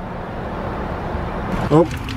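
A steady outdoor rumble and hiss; near the end it changes to the hiss of falling rain as a man starts to speak.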